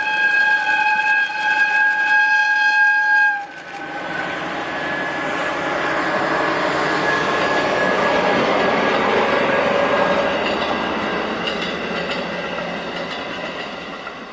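A JR DE10 diesel-hydraulic locomotive sounds its horn in one steady blast of about three and a half seconds, which cuts off sharply. The locomotive and its train of coaches then pass by, the running noise swelling to a peak and fading away near the end.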